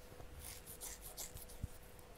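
Faint, short scratchy rustles near the microphone and one soft click, over a low steady electrical hum.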